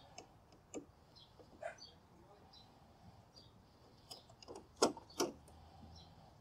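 Faint scattered clicks and light knocks of a screwdriver working on the screws of a minisplit indoor unit's plastic housing, with two sharper clicks close together near the end.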